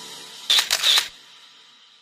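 Camera shutter sound effect: a short burst of sharp clicks about half a second in, over the faint tail of background music fading out.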